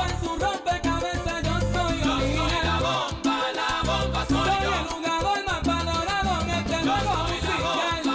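Salsa music with a repeating bass line and melodic lines above it, in a stretch of the song without lead vocals.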